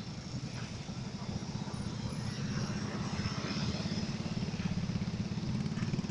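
Fire truck's engine running steadily close by, a low even drone that grows slightly louder about two seconds in.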